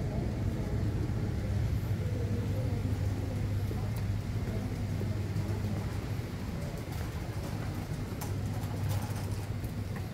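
Airport terminal concourse ambience: a steady low hum with faint, indistinct voices in the distance, and a few light clicks near the end.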